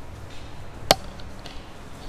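Footsteps going down tiled stairs, with one sharp tap of a shoe on a step about a second in and fainter steps around it.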